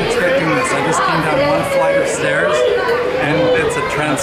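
Voices only: people talking and chattering close by, with no other sound standing out.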